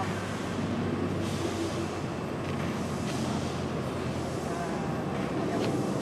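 Steady mechanical background rumble with a constant low hum and no distinct events.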